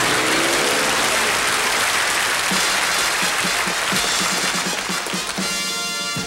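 Studio audience applause over a short title-theme music cue. Partway through, a steady run of low notes comes in, about four a second, and the music closes on a held chord at the end.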